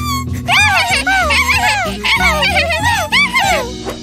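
Cartoon voices giggling, a quick run of short laughs that rise and fall in pitch, over light background music. The laughter fades out near the end.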